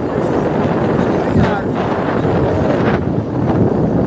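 Rough wind noise buffeting a phone's microphone, mixed with indistinct voices of people calling out at the roadside.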